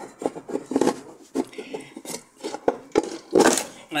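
Plastic drip tray (defrost water reservoir) of a frost-free refrigerator being worked loose and pulled out from under the fridge: a string of light plastic clicks, knocks and scrapes, with a louder scrape about three and a half seconds in.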